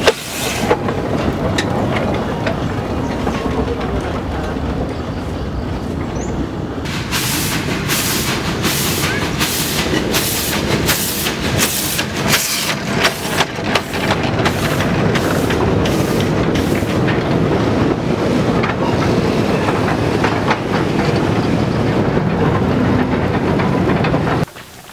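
A 1928 German-built steam locomotive passes close by, loud and continuous, with a hiss of escaping steam. From about seven seconds in, its exhaust beats in a regular rhythm of about two a second, then gives way to a steady rolling rumble as the wagons go by.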